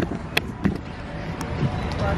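Footsteps of several people walking on a concrete walkway: a few sharp, irregularly spaced steps over a steady low hum of outdoor traffic.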